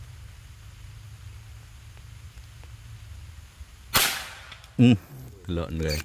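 A single shot from a Naga Runting air rifle firing a 15-grain NSA slug, about four seconds in: one sharp crack with a brief ring-out.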